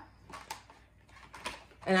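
A few light clicks and taps of felt-tip markers being handled and put back at their box on a wooden table, the sharpest about half a second and a second and a half in.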